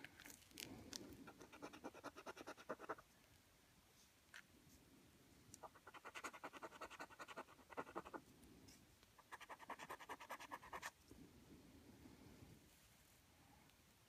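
A coin scratching the scratch-off coating from a National Lottery scratchcard: three faint bursts of quick back-and-forth strokes, a few seconds apart.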